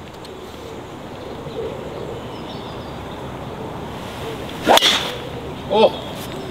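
A golf driver striking a teed ball: one sharp crack at impact, nearly five seconds in.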